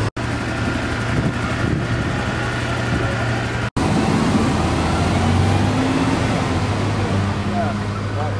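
An engine running steadily at idle, a low even hum, with people talking over it. The sound cuts out briefly twice, near the start and about a third of the way in.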